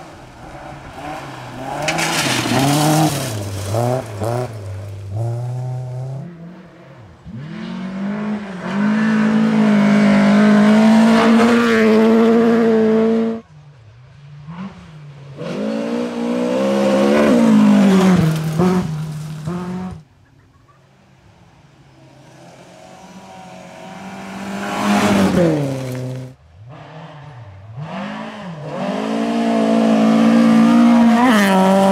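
Volvo saloon rally cars driven hard on a gravel stage, one after another, the engines revving high and dropping through gear changes and throttle lifts as each car passes. The passes are separate clips, each ending abruptly.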